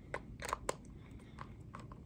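Small screwdriver tightening the wire-clamp screws of a solar charge controller's screw terminal block: a few faint clicks and scrapes of the tip in the screw heads, the sharpest within the first second.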